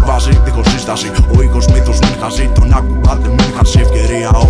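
Hip hop track: a beat of deep, sustained bass notes and regular drum hits, with rapping over it.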